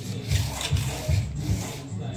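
Plastic exercise sliders scraping across the gym floor under the feet, a few rough strokes as the legs swing round in a plank.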